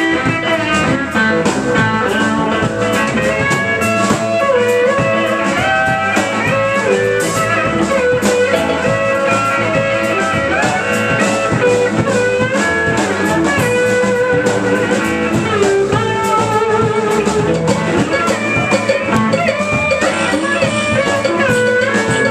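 Live band playing a blues-rock number: an electric guitar lead with bent notes over drum kit and bass guitar, with no vocals.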